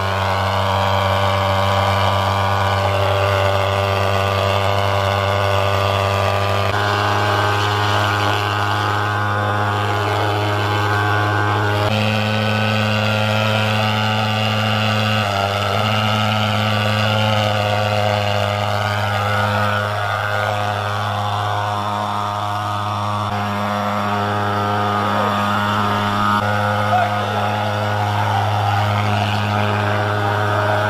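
Handheld pulse-jet thermal fogging machine running, a loud steady low buzzing drone as it blows insecticide fog for mosquito control; the pitch steps slightly a few times.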